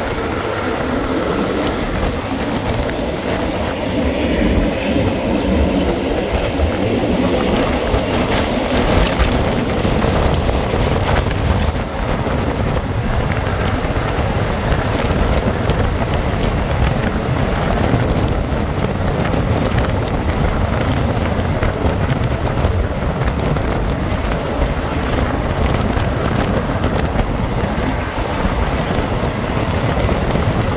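Steady rumble of a moving passenger train heard from its coach side: wheels running on the rails and the carriages' running noise, with no breaks.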